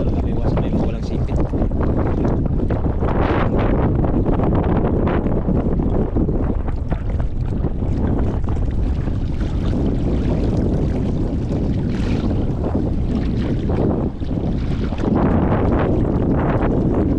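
Steady wind buffeting the microphone, over the sloshing and splashing of feet and a basin moving through ankle-deep sea water.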